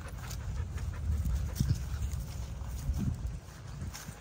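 A dog panting close by, over a steady low rumble.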